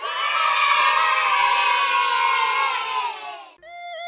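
A group of children cheering and shouting together for about three and a half seconds, then cutting off; a tune starts just before the end.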